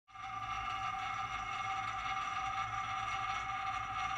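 A steady ambient drone: two held high tones over hiss and a low rumble, unchanging throughout.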